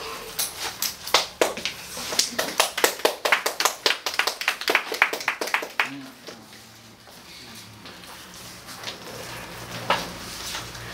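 A small group of people clapping in a small room for about six seconds, the claps dense and uneven, then dying away.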